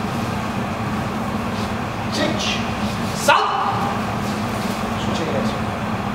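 Steady low electrical hum, with a few short noisy bursts over it; the sharpest comes about three seconds in.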